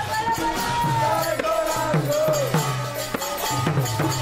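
Kirtan chanting: a voice sings a bending melody over drum beats and hand cymbals struck in a steady rhythm.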